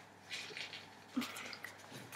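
Faint rustling and light handling noises as a fashion doll's fabric hood is worked over its ears, in short soft scrapes.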